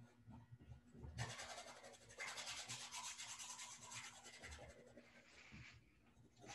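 A paintbrush rubbing and scrubbing across a stretched canvas in quick back-and-forth strokes. It is faint, starts about a second in, and eases off near the end.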